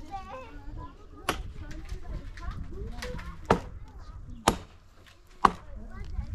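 Chopping: four sharp blows, roughly a second apart, the last the loudest.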